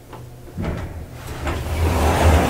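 Elevator car's sliding doors opening after the car stops: a small click, then the rumble and rattle of the door panels sliding open, growing louder.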